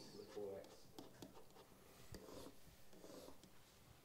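Stylus writing faintly on an interactive whiteboard: small taps and scratchy strokes as an equation is written out and underlined.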